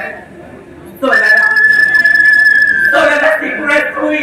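Microphone feedback from a stage PA: a loud, perfectly steady high whistle that starts abruptly about a second in and holds for about two seconds.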